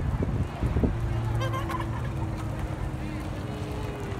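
Skateboard wheels rolling on asphalt, a steady low rumble with a faint hum over it. A brief high chirping call sounds about a second and a half in.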